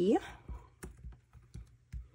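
Light clicks and taps, about six over a second and a half, as fingers press a small key embellishment down onto a glue dot on a paper scrapbook page.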